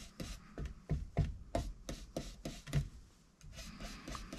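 A small ink blending tool swiped in light, quick strokes across cardstock, about three rubs a second, with a brief pause about three seconds in.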